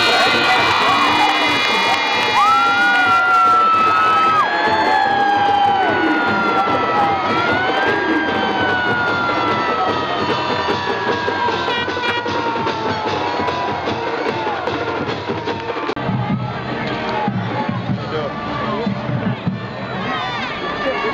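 Football crowd cheering and shouting, with music and long held, slowly sliding tones over the cheering during the first part.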